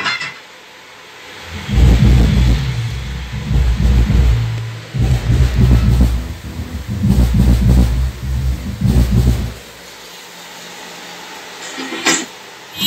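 Subwoofer playing deep bass from music, with almost no mid or treble, driven by a 5.1-channel MOSFET power amplifier. The bass comes in about two seconds in, breaks off briefly near the middle, and stops about two seconds before the end.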